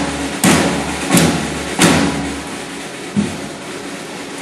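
Military drum struck in slow, even strokes about 0.7 s apart, three loud strokes in the first two seconds, each ringing on briefly, then a softer knock about three seconds in.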